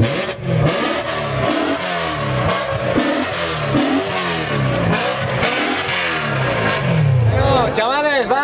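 A car engine revved in quick repeated throttle blips, about one and a half a second, each rev dropping back down, over crowd noise.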